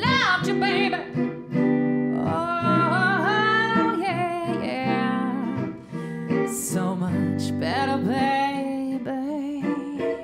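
A woman sings a slow, bluesy, soulful song into a microphone, with held, wavering notes, accompanied by electric guitar chords.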